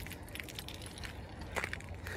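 Footsteps crunching on snow: a few irregular crunches and clicks over a low steady rumble.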